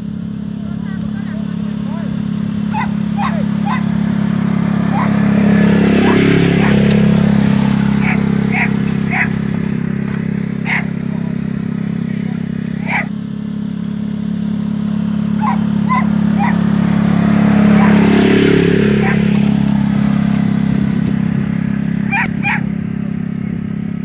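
Side-by-side utility vehicle's engine running at a steady low speed while it tows a roping dummy through arena sand. It grows louder as it comes close, about six seconds in and again near eighteen seconds, and fades in between. Several short, high-pitched chirps sound over it.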